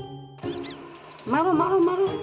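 Two short, high chirps from a caged Alexandrine parakeet about half a second in, then a louder, wavering, voice-like call near the end, over background music with evenly spaced bell-like notes.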